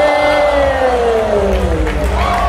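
Music over the battle's sound system: a steady bass under one long held note that slowly slides down in pitch, with the crowd behind it.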